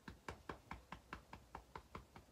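Fingertips tapping lightly and steadily on the side of the body beneath the arm (the EFT under-arm point), about five taps a second.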